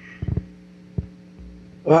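Steady electrical hum on an open call-in audio line, broken by a quick double low thump about a quarter second in and a single thump at about one second; a man starts speaking right at the end.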